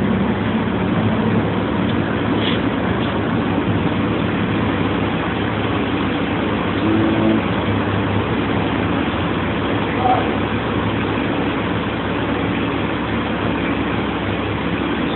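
Steady city traffic noise with a bus engine running close by.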